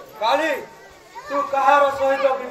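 A performer's raised voice in drawn-out theatrical cries: a short call that rises and falls in pitch about half a second in, then a long held high call starting past the middle.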